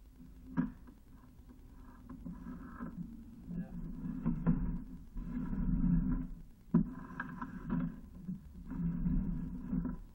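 Sewer inspection camera being pushed along a clay sewer pipe: the push rod and camera head scrape and rumble unevenly, with a sharp knock about half a second in and another near seven seconds in.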